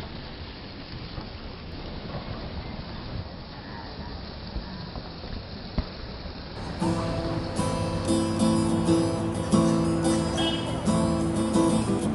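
Steady background noise for roughly the first half, then an acoustic guitar starts playing a little before the middle and carries on, plucked and strummed notes ringing louder than the background.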